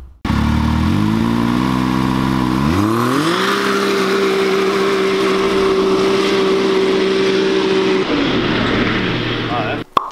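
Modified Can-Am Maverick X3's turbocharged three-cylinder engine under hard acceleration on dirt. It climbs in pitch, rises sharply about three seconds in, holds one steady high note for several seconds, then drops away near the end.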